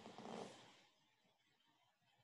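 Near silence: a faint rushing noise that fades away within the first second, then only low room tone.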